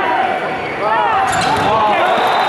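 Athletic shoes squeaking on an indoor volleyball court during a rally: a quick squeak at the start, then a cluster of short squeaks about a second in, over the steady din of the hall crowd.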